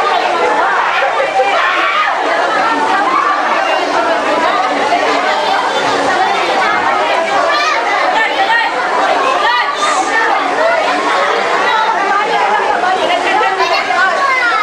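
Crowd chatter: many people talking at once, a continuous din of overlapping voices with no single speaker standing out.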